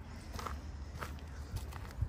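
Faint footsteps on dirt and dry leaf litter: a few soft, irregular crunches and clicks.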